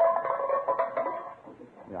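Tin cans being tossed as a radio sound effect: a clatter of metallic clanks with a ringing tone, for about the first second and a half.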